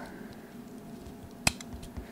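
Plastic-and-pin handling of an Arduino and its stacked shield, with one sharp click about one and a half seconds in as the shield is pressed onto the header pins, and a few faint ticks around it.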